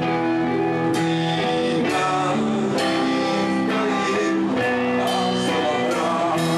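Live song with an acoustic guitar strummed, a strong chord about once a second over held notes.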